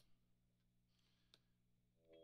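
Near silence: a faint steady low hum from the idling tube guitar amp, with two faint clicks, one at the start and one a little past halfway.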